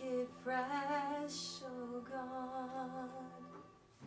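Woman singing a slow worship melody in long, wavering held notes over sustained chords on an electric keyboard. The singing fades out near the end.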